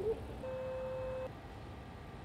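A single steady tone that starts about half a second in and holds one pitch for under a second, over a low background rumble.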